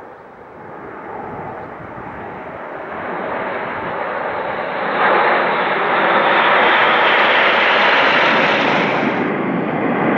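Nine BAE Hawk T1 jets, each with a Rolls-Royce Turbomeca Adour turbofan, flying past low in close formation: a rushing jet noise that grows steadily louder, jumps up about halfway, then loses its top edge near the end as the jets pass and draw away.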